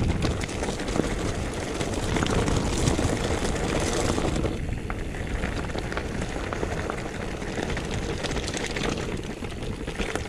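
Mountain bike descending a loose, stony dirt trail: tyres crunching over gravel and rocks, with the bike clattering and rattling over the bumps.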